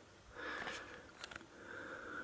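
A quiet pause with faint breathing through the nose and a couple of light clicks a little past a second in, from the test leads being handled.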